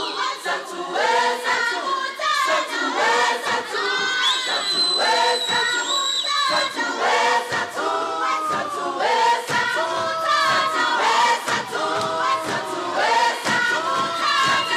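Choir singing in parts with many voices, rhythmic and full throughout. A high piercing note is held above the voices for about two seconds, starting about four seconds in.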